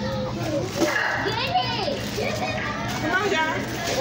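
Many children's voices talking and calling out at once, a busy hubbub of overlapping chatter, over a steady low hum.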